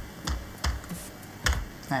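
Computer keyboard typing: a handful of separate keystrokes, with one louder key press about one and a half seconds in.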